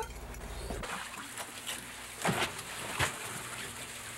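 A steady low hum for about the first second, which then cuts off. Splashing and trickling water follows on a fishing boat's deck, with a few sharp knocks.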